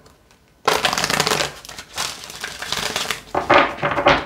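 Sacred Rebels Oracle card deck being shuffled by hand: a dense, rapid rustle of cards that starts about half a second in and runs for about three seconds, with a few sharper strokes near the end.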